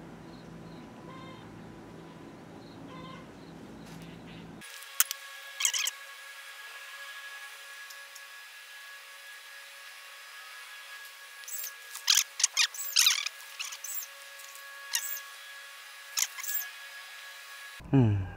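Faint background hush, then short, high-pitched animal chirps: a pair about five seconds in and a scattered cluster from about eleven to sixteen seconds in.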